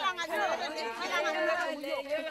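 Several women's voices overlapping at once, a group talking and calling out together.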